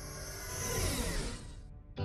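Dramatic background score swelling, with a rising hiss and falling tones that peak about a second in, then dropping away abruptly just before the end.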